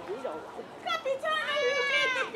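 A woman's high-pitched, drawn-out stage wail of mock crying, starting about a second in and falling away at the end.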